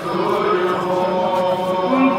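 Men's voices chanting a noha, a Shia mourning lament sung without instruments, in long held notes.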